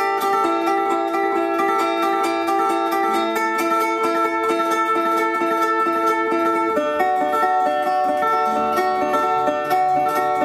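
Metal-bodied resonator guitar fingerpicked in a fast, steady instrumental passage, repeated bass notes under quick treble notes, moving to a new chord about seven seconds in.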